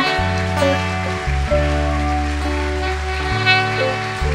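Instrumental praise music with no singing: long held bass notes that change every second or two under sustained chords.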